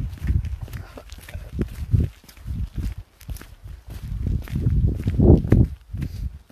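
Wind buffeting the phone's microphone in uneven gusts, strongest shortly before the end, with footsteps crunching on a sandy gravel path.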